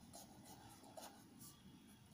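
Faint scratching of a pen writing on paper, in short quick strokes as a word is written.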